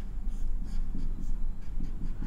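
Marker pen drawing on a white board in a series of short scratching strokes, as the lines and cell symbols of a circuit diagram are drawn.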